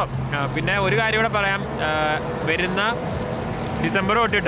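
A man talking, over a steady low hum of street traffic that fades about a second and a half in.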